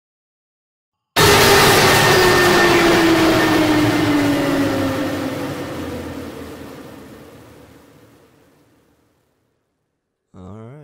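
Cinematic trailer downer sound effect: a sudden loud hit about a second in, with tones sliding down in pitch under a dense wash of noise, fading out through a long reverb tail over about eight seconds.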